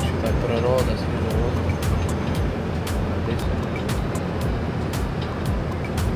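Cabin noise inside a moving bus: a steady low engine and road rumble, with frequent short clicks and rattles from the bus's fittings.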